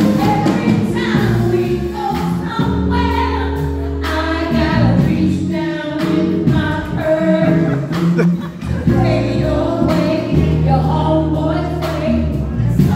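A woman singing live into a microphone over amplified backing music, with long held bass notes under her voice.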